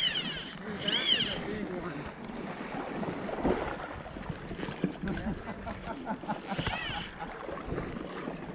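Fly line zipping through the rod guides and the angler's fingers while playing a large rainbow trout on a fly rod: a few brief rising-and-falling zips near the start, about a second in, and again near the end, over steady river and wind noise.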